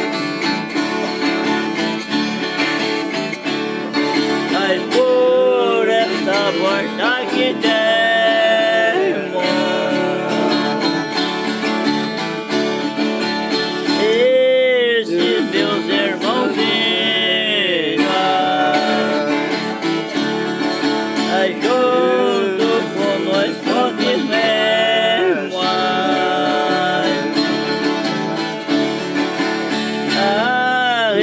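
Viola caipira and guitar strumming a steady accompaniment, with men singing a devotional São Gonçalo dance song in several phrases over it.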